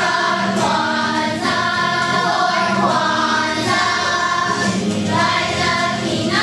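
A children's choir singing, moving from one held note to the next.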